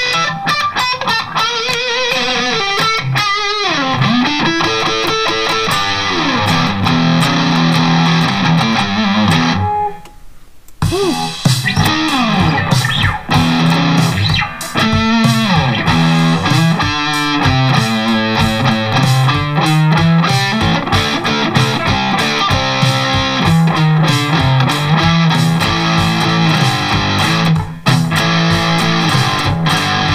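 Distorted electric guitar, a custom Charvel So Cal played through an Eleven Rack modeler, riffing with pitch bends over a drum backing track. The playing breaks off briefly about ten seconds in, then resumes.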